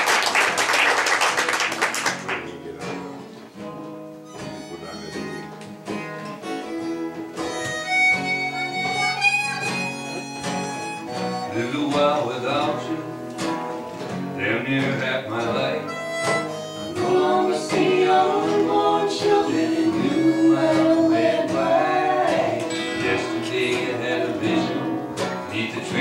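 Audience applause for about two seconds, then an acoustic folk band starts a song's instrumental introduction: acoustic guitars, banjo and upright bass, with a harmonica playing the melody from about halfway through.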